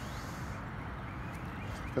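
Steady low background hum with no distinct sound event.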